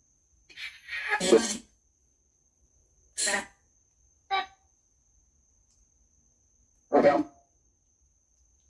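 Spirit box sweeping through radio stations, giving short, choppy bursts of radio sound and voice-like fragments: four bursts about a second or two apart with dead silence between them. A faint steady high whine runs underneath.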